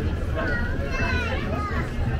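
Background chatter of people on a busy footpath, with a young child's high-pitched voice calling out about a second in.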